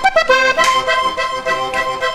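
Diatonic button accordion playing a vallenato phrase: a few quick notes, then a long held chord.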